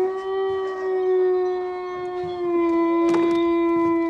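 A dog howling: one long, steady howl held at a single pitch, with a short sharp knock about three seconds in.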